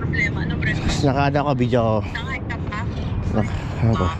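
A person talking, with a steady low rumble of traffic underneath.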